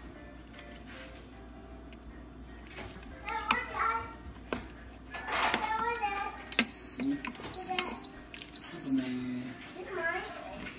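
Instant Pot electric pressure cooker beeping three times, each a steady high tone about half a second long, in the latter half: the signal that the saute program it was just set to has started heating. Before the beeps a child's voice is heard talking.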